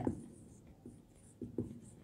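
Marker pen writing on a whiteboard: a string of short, faint, high-pitched scratchy strokes with a few light taps of the pen tip.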